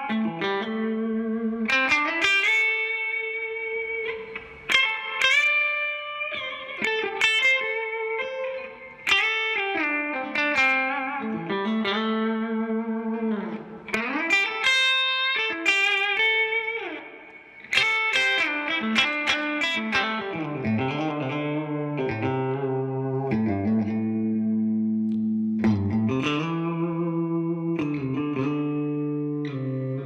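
Gibson Custom 1959 Les Paul Reissue electric guitar played through an amplifier: a lead line of single notes with string bends and long sustained notes, with a short break about two-thirds in, then held two-note chords towards the end.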